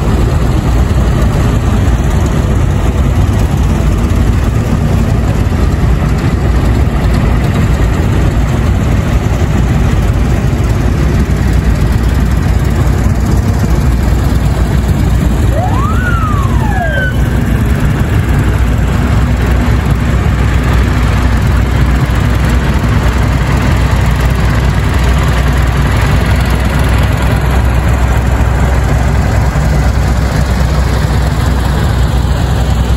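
Engines of several vintage tractors running steadily in a low rumble as they drive slowly past. About halfway through, a short whistle rises and then falls in pitch.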